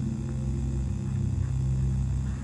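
A steady low hum with several even overtones and no music or speech over it.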